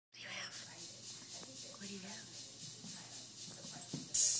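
Weimaraner puppy panting in a steady rhythm, about three breaths a second, while it gnaws an ice cube.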